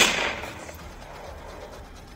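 A single gunshot sound effect, a sudden bang at the very start with a tail that fades over about half a second.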